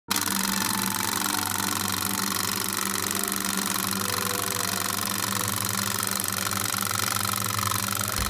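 Film projector sound effect: a steady rapid mechanical clatter over hiss and a low hum, starting abruptly.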